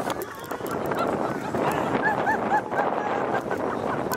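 A woman laughing hard and high-pitched, in quick runs of short shrieking 'ha' bursts, over steady wind rumble on the microphone.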